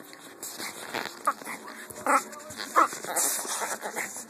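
Dog vocalising during rough play: three or so short, high cries that bend in pitch, with rustling of movement on the bedding.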